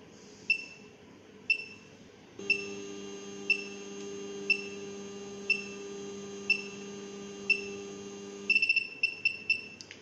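Carewell ECG-1112M electrocardiograph's thermal printer motor running with a steady low whine for about six seconds while it prints a 12-channel ECG report, over a short high beep once a second, the heartbeat beep of the machine's demo ECG signal. The motor stops near the end and a quick run of beeps follows as the printout finishes.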